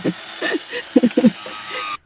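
MaxxAir MaxxFan roof vent fan running, a steady whir with a high, even whine, with short bursts of laughter over it.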